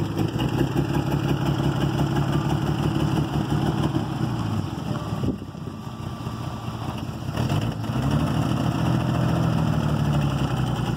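1949 Chrysler Windsor's flathead six-cylinder engine running at low speed as the car is driven slowly. The engine note drops about five seconds in and picks up again, rising slightly, near eight seconds.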